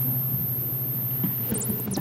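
A pause in speech filled with steady room background noise: a low electrical hum under a thin, high-pitched whine and faint hiss.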